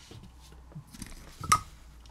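Small handling noises of tools and wires on a soldering workbench: light rustles and taps, then one sharp click with a brief ring about one and a half seconds in.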